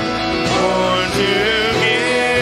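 Two women's voices singing a worship song together over keyboard and fuller instrumental accompaniment, holding long, wavering notes.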